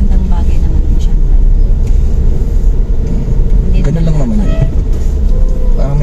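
Steady low rumble of a car's engine and road noise heard from inside the cabin, with brief voices about two-thirds of the way through.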